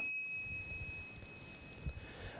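A single high electronic chime: one ding that rings on at a steady pitch and fades slowly over about two seconds. It is the audiobook's cue that marks a note to the text.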